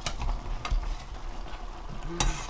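Metal ladle clinking against a pot and scooping broth from a boiling pot, with the broth bubbling underneath. Two sharp clinks stand out, one at the start and one about two-thirds of a second in.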